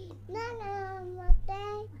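A small child singing a repetitive chanted rhyme in two drawn-out, high-pitched phrases, with a thump between them a little past halfway.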